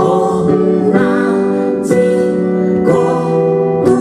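Live band music from an electric keyboard and an electric guitar playing sustained chords that change about once a second.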